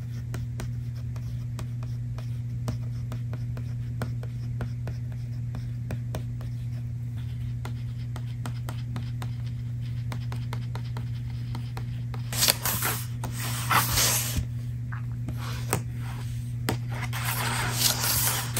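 Fingers scratching and tapping lightly on a paper book, with two longer bursts of paper rustling in the second half. A steady low hum runs underneath.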